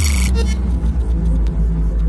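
A loud, deep, steady electronic bass rumble, part of a podcast intro's sound design.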